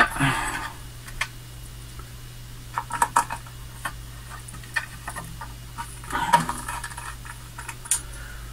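Small metal parts being handled: scattered light clicks and taps of screws and a metal bracket against the printer's base plate, bunched about three and six seconds in, over a steady low hum.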